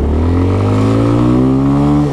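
A 200cc Chinese replica supermoto engine pulling under acceleration, its revs rising steadily through the gear. Heard from the rider's position with wind rushing past.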